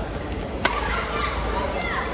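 Badminton racket striking a shuttlecock once, a sharp crack about two-thirds of a second in, over the steady background chatter of a sports hall.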